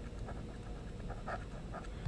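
Faint breathing close to the microphone over low room hiss.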